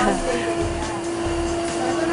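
Bottling-line machinery running with a steady hum and hiss.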